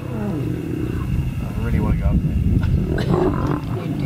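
Lions growling and roaring in a fight, with people's voices over them.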